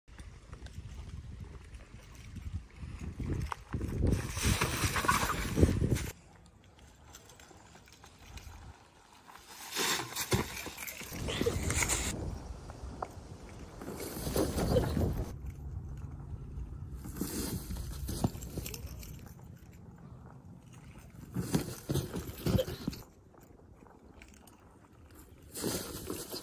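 A fat-tyre unicycle (Nimbus Hatchet) riding over dry leaves and dirt and down a small drop. Its sound comes as several separate bursts of rough noise, each a second or a few seconds long, with quieter stretches between them.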